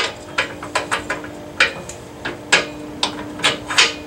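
Steel suspension parts, a lower control arm and tension control rod, being fitted by hand, knocking and clanking: about a dozen irregular sharp metal knocks.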